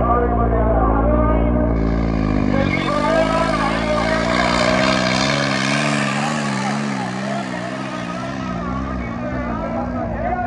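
Diesel tractor engine running hard while pulling a harrow, its pitch wavering up and down under the load. A rush of higher noise joins from about two seconds in and fades near the end.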